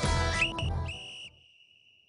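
Electric-guitar music plays and breaks off a little over a second in. Overlapping it, a high whistle slides up about half a second in, then holds one steady tone and fades.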